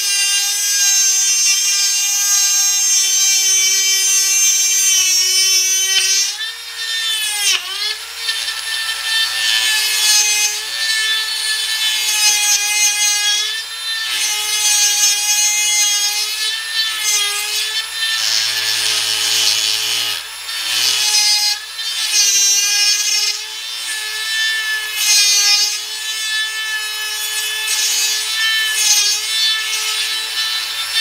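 A Dremel rotary tool with a spiral fluted cutter runs at a steady high whine while it cuts through brass, joining drilled holes into a slot in a knife guard. The pitch sags and recovers as the cutter is pushed into the metal, with one deep dip about seven seconds in.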